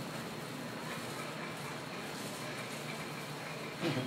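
Steady hair-salon background noise with faint voices, and a brief sharp sound just before the end.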